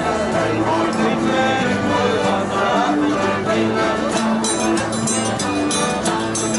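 Live acoustic folk band playing a maritime tune: strummed acoustic guitars and a long-necked plucked string instrument over held chords on a diatonic button accordion. The strumming turns brighter and crisper about four and a half seconds in.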